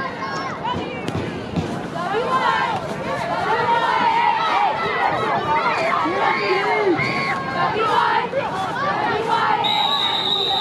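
Football crowd and sideline players yelling and cheering, many voices overlapping, getting louder about two seconds in. A single thump comes about a second in.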